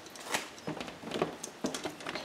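Light clicks and knocks of a battery box being set down on a bike's metal rear rack and shifted into place: several short, separate taps.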